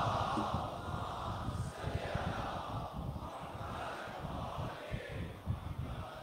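Large congregation of many voices reciting together in a blended chorus, the salawat response given after the Prophet Muhammad's name is spoken.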